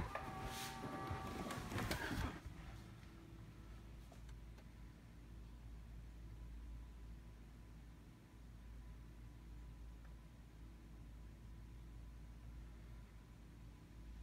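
Quiet room tone with a faint steady low hum. In the first two seconds there is a short, louder stretch of movement noise carrying a few faint steady tones.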